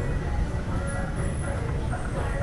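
Street ambience on a bar strip: people's voices and faint music from the bars over a steady low rumble.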